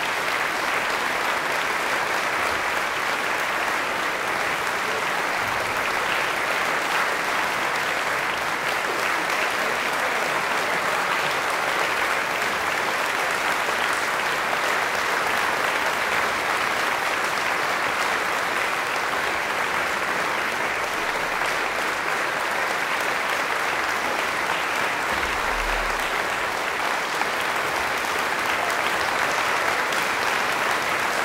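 Audience applauding in a steady, even round of clapping.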